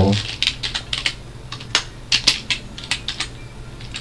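Computer keyboard being typed on: a quick, uneven run of keystroke clicks as a name is typed out.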